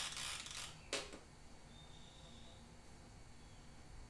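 A long breath blown out through pursed lips, stopping just under a second in, then a single sharp click. After that, only faint room tone.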